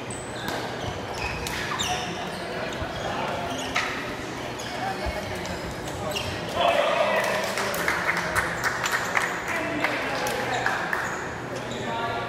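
Foot-shuttlecock rally in a sports hall: sharp taps of the shuttlecock being kicked and brief high squeaks of shoes on the court floor, with players' voices. The voices and taps grow louder from about six and a half seconds in.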